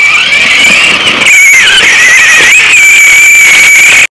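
Electric motor and gearbox of a kids' ride-on toy car whining at a high, steady pitch as it drives through loose sand. The pitch dips and recovers twice as the motor labours.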